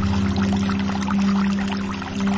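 Calm music with long held low notes, laid over a steady sound of pouring, trickling water.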